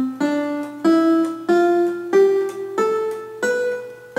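Electronic keyboard playing an ascending C major scale one note at a time, D, E, F, G, A, B after a held C, about one note every two-thirds of a second, each note struck and fading.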